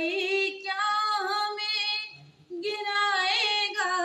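A single high-pitched voice singing a slow melody in long, ornamented held notes. It breaks off for a breath about two seconds in, then starts a long held note near the end.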